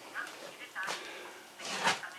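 A man's voice in a pause between sentences: a faint hesitant syllable, then a short breath near the end.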